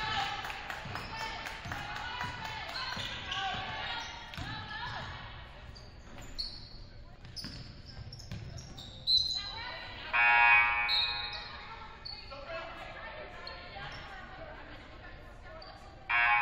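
Basketball game play on a hardwood gym floor: the ball bouncing, with players' and coaches' voices calling out in the echoing hall. Twice, once near the middle and once at the very end, there is a loud pitched squeal about a second long, typical of sneakers skidding on the court.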